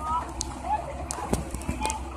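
Distant voices calling out over a steady low rumble, with a few sharp knocks and clicks in between.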